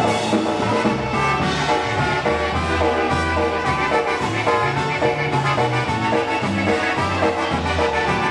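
Live polka band playing an instrumental passage: two trumpets lead over accordions and a bass guitar line.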